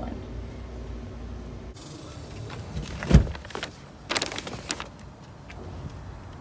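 A low steady hum, then one heavy thud of a car door about halfway through, followed by a short burst of rustling and clatter at the car's open cargo area.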